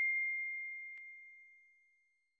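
A ding from a subscribe-button animation: one high, pure ringing tone fading away to nothing about a second and a half in, with a short click about a second in.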